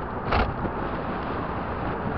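Steady road and wind noise from a vehicle driving along a city road, with a brief louder thump about a third of a second in.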